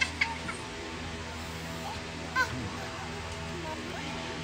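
Birds calling outdoors: a few short chirps near the start and another about two and a half seconds in, over a steady low hum.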